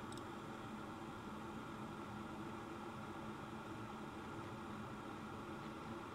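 Faint steady hiss with a low electrical hum underneath: the room tone and noise floor of a desk microphone, with nothing happening.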